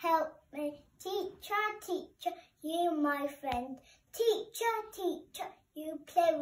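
A young boy singing in a sing-song chant, his words hard to make out, with a single sharp click about halfway through.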